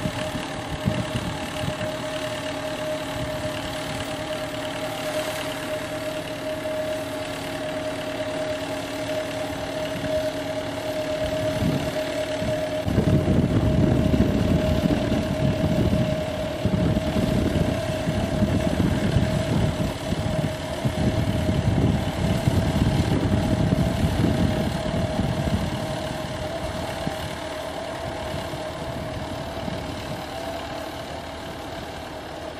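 An engine running steadily with a constant whine. About halfway through, a louder, uneven low rumble comes in and fades away a few seconds before the end.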